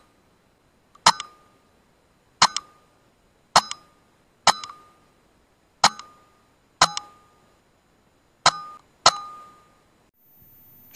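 A string of eight shots from a sub-12 ft-lb .25 BSA Scorpion SE pre-charged air rifle, irregularly spaced. Each is a sharp crack followed at once by a second, smaller knock and a short metallic ring.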